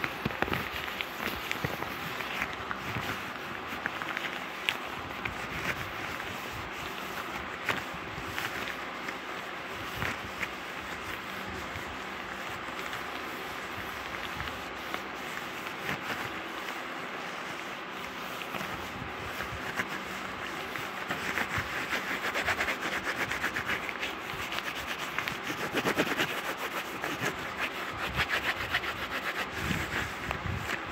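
Gloved hands rubbing and brushing right against the microphone: a continuous crackly rustle full of small clicks, busier about two-thirds of the way through.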